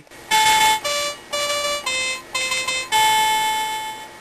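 Instrumental interlude of a song: a simple melody of about six held, beep-like electronic keyboard notes, the last one held for about a second.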